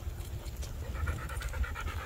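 Dog panting rapidly, about seven short breaths a second, starting about half a second in, over a steady low rumble.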